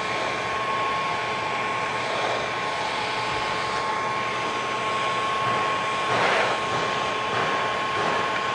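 Steinel heat gun running steadily, its fan blowing a constant rush of hot air with a steady whine, heating vinyl wrap film so it shrinks around a corner.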